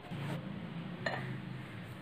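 Steel mixer-grinder jar being handled, with a light metallic clink about a second in, over a low steady hum.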